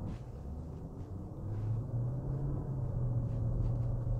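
Steady low rumble of a Genesis EQ900 Limousine's 5.0 V8 and tyres, heard inside the cabin while driving slowly; it grows a little louder about a second and a half in.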